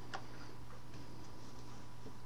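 Steady low room hum and hiss, with one light click shortly after the start as the knitting loom hook taps against a peg.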